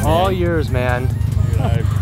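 Excited voices and laughter over background music with a steady low pulsing bass.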